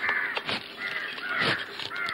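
Crows cawing, several short harsh caws one after another, with a few light knocks among them.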